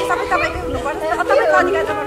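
A group of people chattering and talking over one another.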